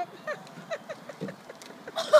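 A person laughing softly in a run of short laughs, about four or five a second.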